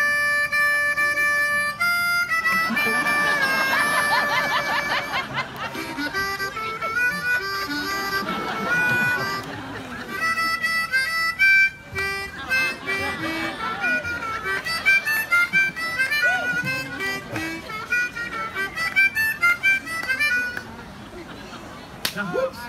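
A harmonica playing a quick tune. It opens with a held chord for about two seconds, then runs through many short, changing notes.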